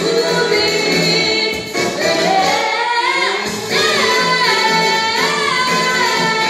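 A young girl singing a jazz vocal over an instrumental backing track. About two seconds in her voice slides up into a higher register, and the notes that follow are held with a wavering vibrato.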